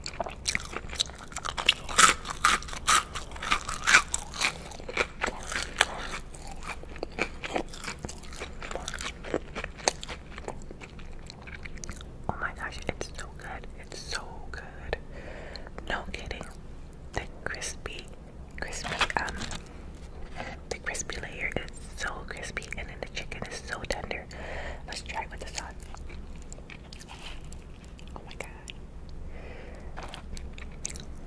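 Close-miked biting and chewing of a crispy fried chicken nugget. Sharp crunches are loudest in the first few seconds, then give way to softer wet chewing and mouth sounds.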